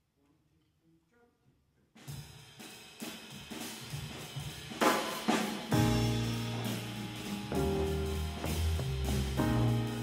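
A jazz big band starts a tune: after about two seconds of near quiet the drum kit comes in with snare, bass drum and cymbals, and about six seconds in the bass and horns join.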